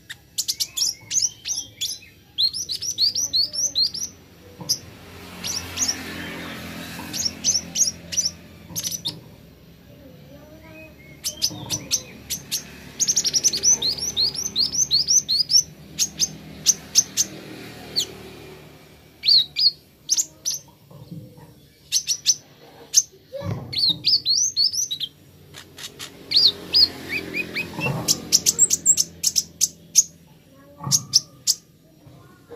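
Kolibri ninja sunbird singing: bursts of rapid, high, thin chirps, each burst a quick run of falling notes, repeated again and again with short pauses between them.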